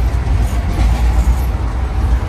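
Steady low rumble of a moving passenger train, heard from inside a closed first-class AC sleeper coach.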